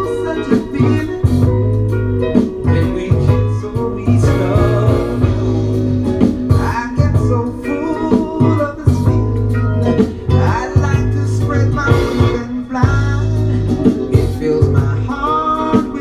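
A 1979 Motown soul ballad playing from a vinyl LP on a turntable, with guitar and bass over a steady low bass line.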